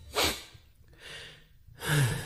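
A quiet gap between songs holding short breathy gasps: one about a quarter second in, a faint one in the middle, and another near the end.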